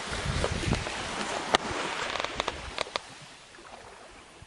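Wind rushing and buffeting over the camera microphone, with a few sharp clicks; it dies down near the end.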